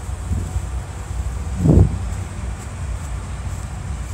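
Wind buffeting a handheld phone's microphone, a steady low rumble, with one short louder burst a little under two seconds in.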